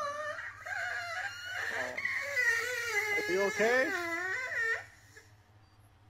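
A man crying in an exaggerated, high-pitched, wavering wail for about five seconds, then falling quiet.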